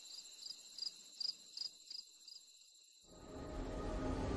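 Cricket chirping: about seven short, high chirps at roughly three a second, stopping after about two seconds. About three seconds in, music fades in.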